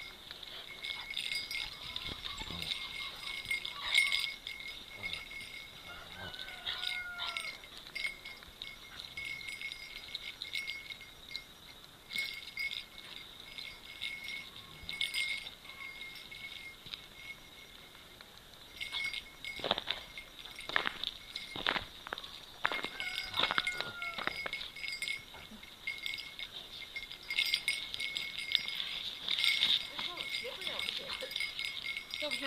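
Akita dogs playing on ice: scuffling and sharp knocks, loudest in a cluster about two-thirds of the way through, and a couple of short high whines. A light metallic tinkling runs underneath throughout.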